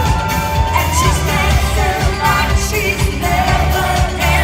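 Live electronic disco-pop band playing over a steady, bass-heavy beat, with a singer holding a long note into the microphone that ends about a second in, then moving into shorter sung phrases.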